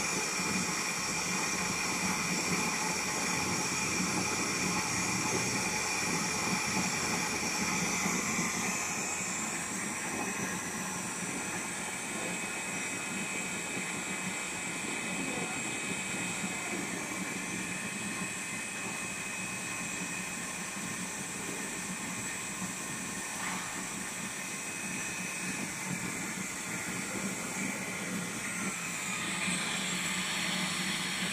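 Servo-driven film slitting and rewinding machine running at speed, a steady whine over a hiss from the rollers and travelling film web. The higher tones change about nine seconds in, and the sound grows a little louder near the end.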